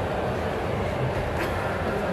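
Steady background din of an indoor sports hall, a low rumble with no clear single source, with a brief tap about one and a half seconds in.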